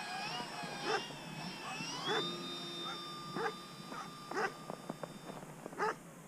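Dogs barking, about five barks spaced roughly a second apart. Behind them runs the whine of a Multiplex FunCub RC plane's electric motor and 13x6 four-blade prop, which rises in pitch about two seconds in, holds steady, and drops out shortly before the end.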